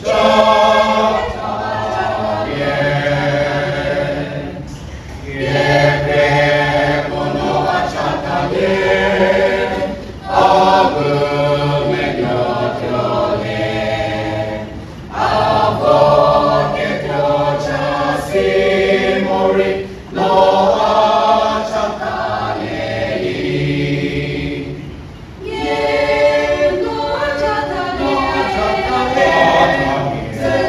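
Mixed choir of men and women singing a hymn without accompaniment, in phrases of about five seconds with short breaks between lines.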